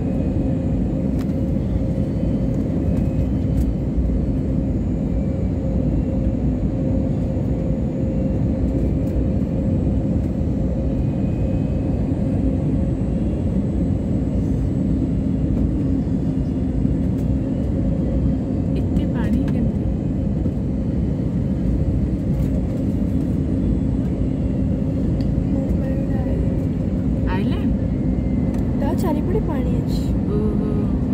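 Airliner cabin noise during the descent: the engines and airflow make a loud, steady drone with a constant low hum.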